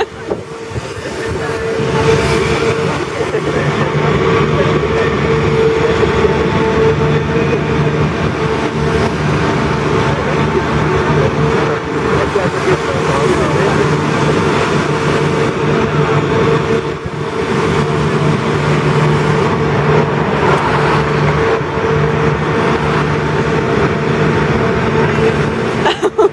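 The Grand Éléphant's diesel-driven hydraulic machinery running steadily as the mechanical elephant moves: a constant engine hum with a steady higher tone above it, louder after the first two seconds.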